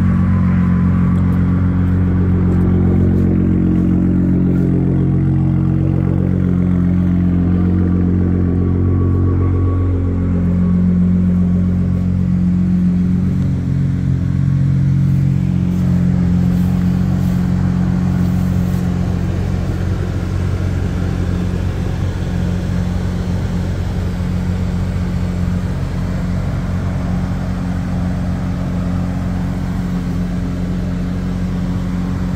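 A 2023 Ford F-150 Raptor's twin-turbo 3.5-litre EcoBoost V6 running at idle, a steady low engine note that wavers a little in pitch for a while before settling. It is heard first by the tailpipe, then from inside the cab.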